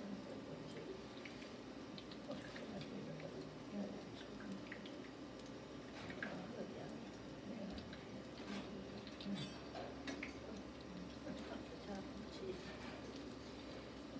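Zucchini fritters frying in shallow oil in a frying pan: a faint, steady sizzle with irregular small crackles and spits, and now and then the light scrape or tap of a metal spatula as the fritters are turned.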